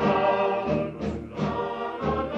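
Recorded choir singing held, sustained notes, with a short drop in level about a second in before the voices swell again.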